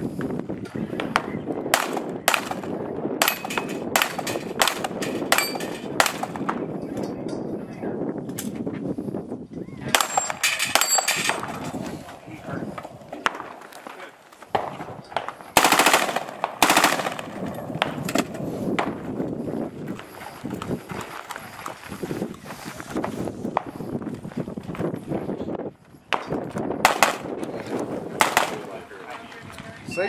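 Rapid semi-automatic gunfire, shots coming in quick strings with short pauses between them. The densest burst comes about halfway through, and a last string comes near the end.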